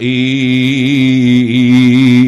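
A man's voice chanting one long, drawn-out note in a melodic religious recitation, the pitch wavering slightly as it is held.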